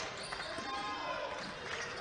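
Basketball arena game sound: a steady murmur of crowd and court noise during live play.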